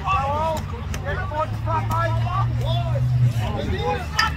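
Several voices shouting and calling across a sports field during play. Under them runs the low hum of a passing vehicle's engine, which rises slightly and stops about three and a half seconds in.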